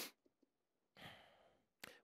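Near silence in a pause, with one faint breath about a second in, caught by a headset microphone.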